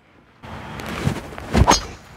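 Golf club striking a ball off the tee: a rising rush of noise during the swing, then a sharp crack of impact about one and a half seconds in.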